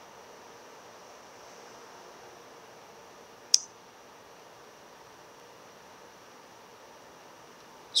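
Faint steady hiss with a single sharp computer-mouse click about three and a half seconds in.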